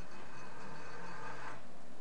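Steady hiss with a faint low hum, even in level throughout; no distinct event stands out.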